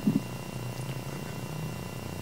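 Low steady hum of room tone during a pause in speech, with a short faint voice sound at the very start.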